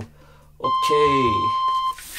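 Electronic timer beep: one steady, high tone held for about a second and a half that cuts off sharply, marking the end of a timed stretch interval.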